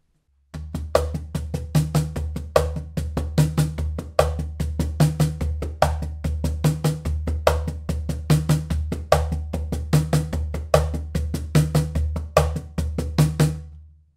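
Pearl Inner Circle Multi Drum Cajon, its tubular Asian-hardwood body played by hand like a djembe or conga: a steady groove of quick slaps and tones with a deep bass stroke about every 0.8 s. Its short internal snare wires give the strokes a rattly, flamenco-style buzz, and the sound hole adds a heavy bass.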